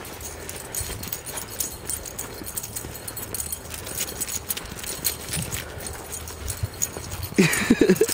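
Footsteps crunching through snow, a steady run of short crisp crunches, with a person's voice breaking in near the end.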